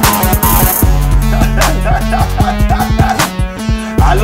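Hip hop beat with a string of short dog barks over it, about a second in and onward.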